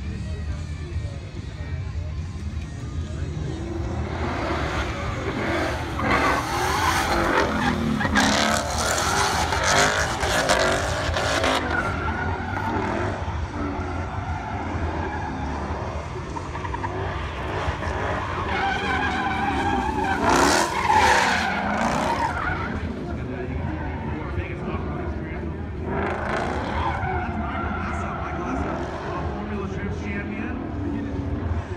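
Drifting Ford Mustangs with high-revving engines rising and falling in pitch and tyres squealing and skidding. The sound swells loudest from about 6 to 11 seconds in and again around 20 seconds, as the cars sweep past.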